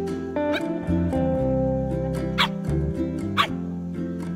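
A puppy gives two short, high yelps during rough play, one about halfway through and another a second later, over guitar background music.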